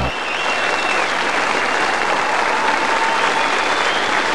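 The song's music cuts off at the very start, and a large audience applauds steadily.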